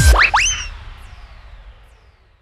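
End of an electronic dubstep track: a last heavy bass hit, then two quick rising 'boing'-like pitch sweeps, after which the sound dies away in a fading tail.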